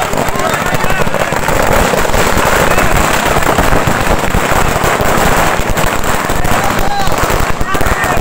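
A string of firecrackers going off in a rapid, unbroken crackle, with a crowd shouting and cheering over it.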